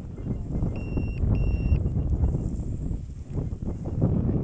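Wind buffeting the camera microphone in uneven gusts. Two short electronic beeps sound close together about a second in.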